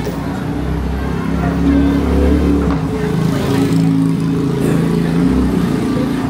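A motor vehicle's engine running close by, its low hum swelling through the middle few seconds, over the chatter of a street crowd.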